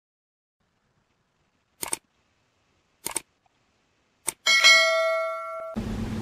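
Editing sound effects over a title card: three short sharp clicks about a second apart, then a bright bell-like chime that rings and fades over about a second.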